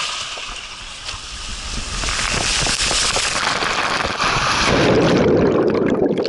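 Water rushing under a rider sliding fast down a steep open water slide, a steady noisy rush that builds. Near the end comes a louder, heavier splash as the rider plunges into the landing pool.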